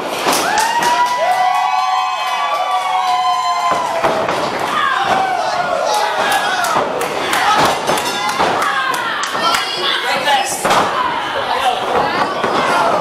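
Professional wrestling in the ring: many sharp thuds and slaps of wrestlers' strikes and falls, under a crowd of spectators shouting and cheering, with long drawn-out shouts in the first few seconds.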